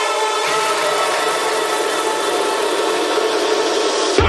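Bass house track in a breakdown. The kick and bass are cut out, leaving a dense, buzzing synth build with a little low-mid body coming in about half a second in.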